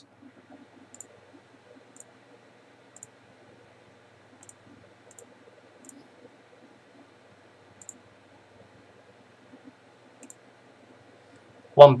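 Faint computer mouse clicks, about eight of them spaced a second or more apart, over a very faint low hum.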